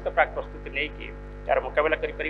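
A steady electrical mains hum under a man's speech through a podium microphone and PA; the speech comes in two short stretches, at the start and near the end.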